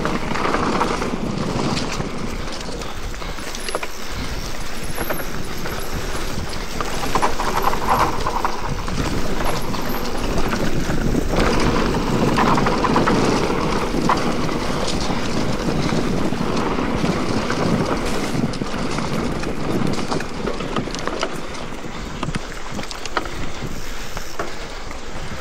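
Mountain bike descending a dirt forest trail at speed: steady wind noise on the microphone over the tyres rolling on dirt, with the bike rattling and clicking over bumps throughout.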